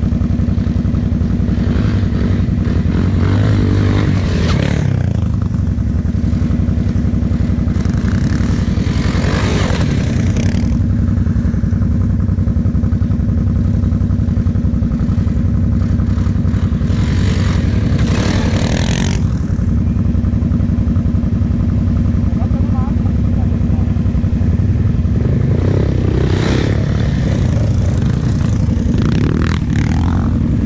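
A sport quad (ATV) engine idling steadily at close range. Four times, a louder rush of noise rises and falls over the idle for a couple of seconds.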